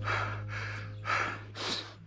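A runner breathing heavily in short, rapid gasps and sighs, out of breath after a hard, fast final mile.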